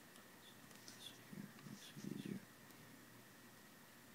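Near silence: room tone, with two faint, brief low sounds about a third of the way in and about halfway through.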